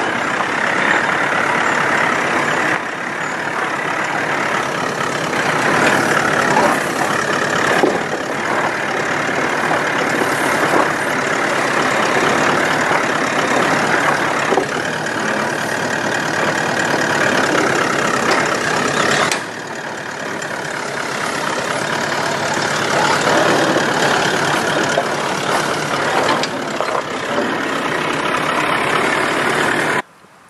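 Toyota Land Cruiser VDJ79's twin-turbo V8 diesel engine running at low revs as the truck crawls slowly over rocks. The sound is steady, with a brief dip a little past halfway.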